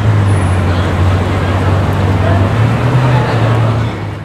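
A Ferrari's engine and exhaust running at low revs as the car pulls slowly away: a steady deep rumble, with street traffic noise behind it.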